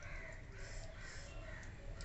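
Faint bird calls repeating about twice a second in the background.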